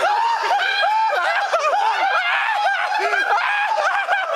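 Young men laughing hard: a long run of short, high-pitched giggles and snickers.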